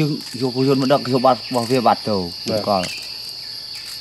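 A steady, high-pitched chorus of insects, with a man's voice talking over it in short phrases until about three seconds in.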